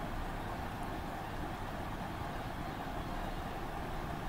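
Steady background hiss and low hum of the room, with no distinct event.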